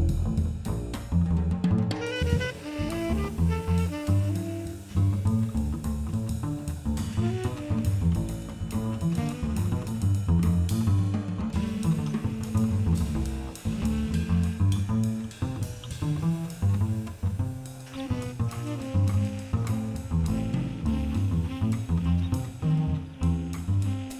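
Live jazz: an upright double bass played pizzicato carries a busy line of low plucked notes up front, with drum kit and cymbals behind.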